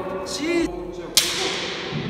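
A bamboo shinai strike: one sharp crack about a second in, its echo dying away in the hall.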